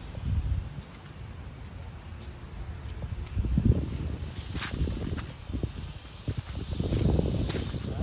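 Footsteps through dry fallen leaves on grass, with scattered crisp crackles over an irregular low rumble.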